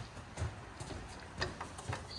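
A few faint, separate clicks and knocks as a toddler handles a toy microphone and a toy karaoke player.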